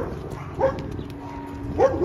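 Short whimpering calls from an American bully puppy on a leash: one about half a second in and a rising one near the end.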